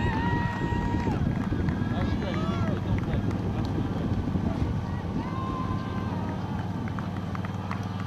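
Scattered shouts and calls from roadside spectators cheering on passing runners, over the steady hum of a vehicle engine.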